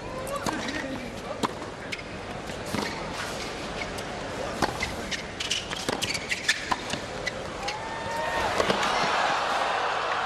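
Tennis rally on a hard court: a string of sharp racket-on-ball hits spaced a second or so apart. The crowd noise under it swells toward the end as the point goes on.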